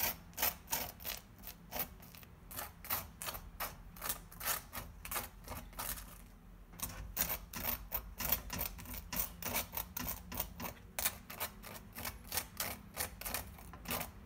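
Metal spoon scraping across dry toast as it spreads mayonnaise and mustard, in quick strokes of about four a second, with a brief pause a little before halfway.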